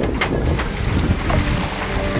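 Wind buffeting the microphone on the deck of a sailing catamaran under way, over a steady rush of water along the hulls.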